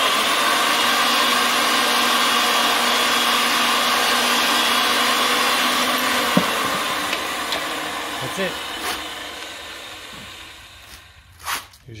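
Ridgid 300 power threading machine running steadily, spinning three-quarter-inch steel pipe while a wheel pipe cutter on its carriage is cranked into the pipe. A sharp click comes about six seconds in, then the machine slowly runs down and goes quiet near the end.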